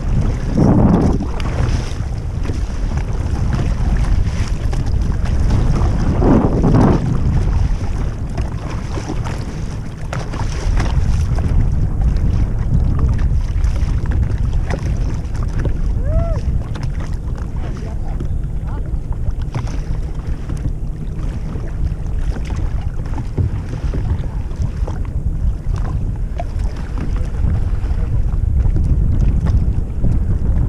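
Wind buffeting the microphone, a steady low rumble, with water sloshing around a plastic kayak drifting on shallow water. The rumble swells louder near the start and again about six seconds in.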